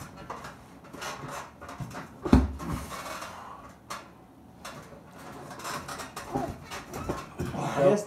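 Hands and arms knocking and shuffling on an arm-wrestling table as two men set their grip, with one heavier thump about two seconds in. Low voices come and go.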